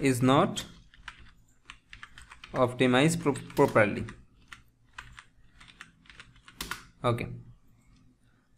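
Typing on a computer keyboard: an irregular run of key clicks as a sentence is typed out.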